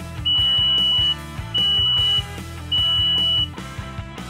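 Buzzer on a homemade LM339 water level indicator beeping three times, high-pitched and steady, each beep nearly a second long, over background rock music.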